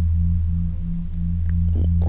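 Background music: a steady low drone of two held tones, with no voice over it.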